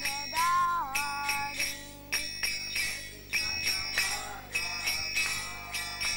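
A boy singing a kirtan chant, with small hand cymbals (karatalas) struck in a steady rhythm, about three strikes a second, ringing between strikes.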